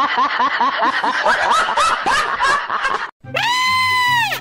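Rapid high-pitched giggling, a quick 'hee-hee-hee' of about five short rising-and-falling cries a second. About three seconds in it cuts off abruptly and a single long, high held note begins over a low steady musical tone.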